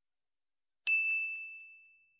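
A single high, bright bell ding, a notification-bell sound effect, struck a little before the middle and dying away over about a second.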